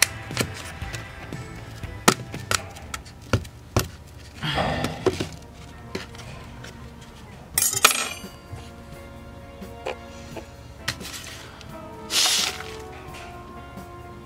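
A knife stabbing and cutting into a carvable craft pumpkin: many sharp clicks and knocks, with three louder crunchy scraping bursts as the blade is worked through the shell. Background music plays underneath.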